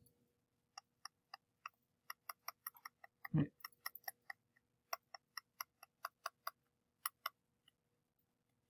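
Faint, irregular computer mouse clicks, about three or four a second, as short burn-tool strokes are dabbed on; they stop a little before the end. One short low voice sound about halfway through.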